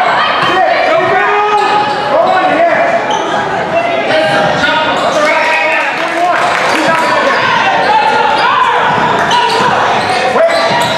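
Basketball bouncing on a hard gym floor during a live game, with players and spectators calling out, echoing in a large hall.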